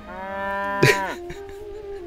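A cow mooing once, one long call of about a second that rises and then falls, with a sharp click near its end.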